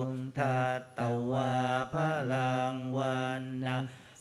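Buddhist monk chanting Pali blessing verses in a low male voice, held on a near-monotone with a few brief pauses for breath.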